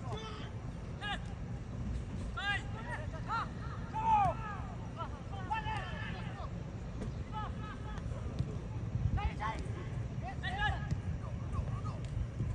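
Short shouted calls from people at a football match, coming every second or so, over a steady low rumble.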